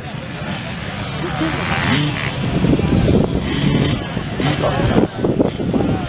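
Off-road enduro motorcycles running across a field course, engines rising and falling in pitch and getting louder after the first second, mixed with nearby voices.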